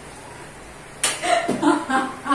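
A sharp slap about a second in, followed by short bursts of a woman's laughter.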